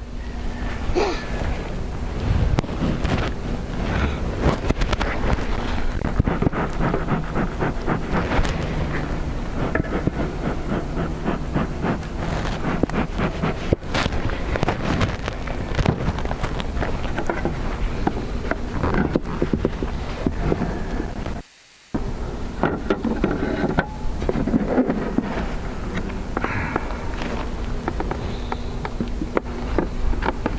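Wind rumbling on the microphone over a steady hum of honeybees around an opened hive, with scattered knocks and clunks of wooden hive parts being handled. The sound cuts out briefly about two-thirds of the way through.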